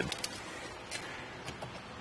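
Quiet room tone with a few faint light clicks, from a steel tape measure being handled and held out against a folded hitch bike rack.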